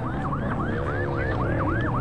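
A siren in a fast yelp, its pitch rising and falling about three times a second.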